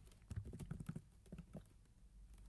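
Faint typing on a computer keyboard: a quick run of key clicks that thins out about a second in.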